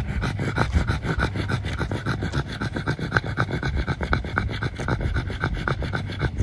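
A pug panting hard with its tongue out, in fast, even breaths close to the microphone: a short-nosed dog cooling itself down in warm weather.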